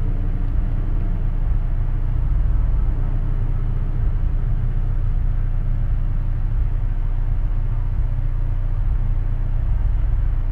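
Steady low rumble of a car engine idling, with no sudden events.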